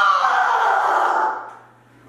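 A person's drawn-out vocal sound of effort, pitched and dropping slightly at first, turning into a breathy exhale that fades out about a second and a half in. It goes with straining through a dumbbell press.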